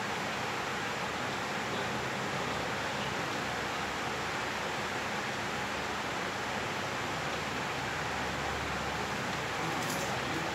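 A steady, even hiss that does not change, with no distinct knocks or strokes standing out.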